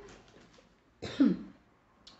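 A woman coughs once, a short sharp cough about a second in, with quiet around it.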